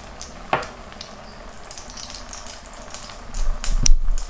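Mashed-potato pinwheels deep-frying in hot oil in a pan: a steady sizzle with small crackling pops, and one sharper pop about half a second in. Near the end there is a loud, low thump.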